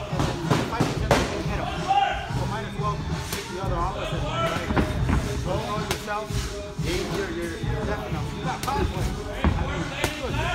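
Boxing gloves landing punches during sparring: a handful of sharp smacks at uneven intervals, over background music with a singing voice.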